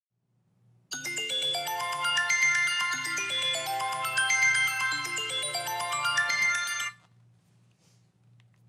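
A smartphone alarm tone playing a chiming melody of quick rising note runs, repeating about once a second. It starts about a second in and cuts off suddenly near seven seconds, over a faint low hum.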